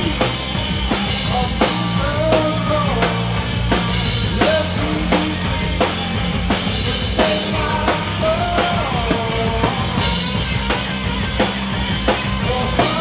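A stoner rock band playing live and loud: steady drum-kit beat with bass drum and snare, distorted electric guitars and bass underneath, and a melody bending in pitch over the top.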